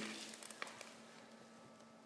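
Faint steady hum of the small computer fan on a homemade pellet-burning rocket stove, with a few faint clicks about half a second in.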